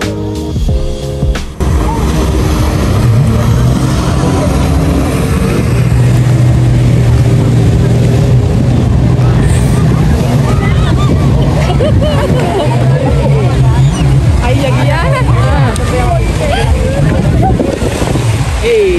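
Background music stops about a second and a half in, then a jet ski's engine runs with a steady low hum as the craft speeds across the water, throwing spray. People's voices rise over it in the second half.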